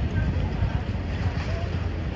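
Wind buffeting a phone's built-in microphone, a steady low rumble with faint street noise behind it.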